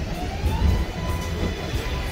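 New York City Subway 7-train car (R188) at an elevated platform: a low rumble with an electric motor whine that rises in pitch and then holds steady.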